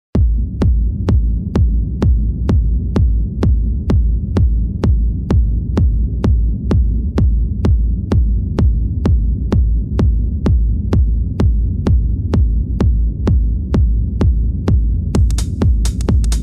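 Intro of an electronic dance track: a sharp click on every beat, a little over two a second, over a deep throbbing bass drone. A hissing hi-hat-like layer comes in near the end.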